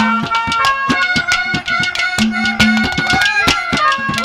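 Haryanvi folk (ragni) music accompaniment: fast hand-drum strokes under a reedy melody line, with a low held note that drops out and returns midway.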